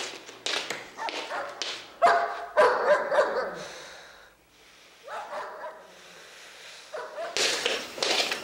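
Dogs barking and whining: a run of sharp barks, with the loudest, longest calls about two to three seconds in, then a louder, rougher noise starting near the end.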